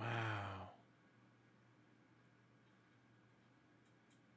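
A man's short voiced sigh, well under a second, at the very start, followed by near silence.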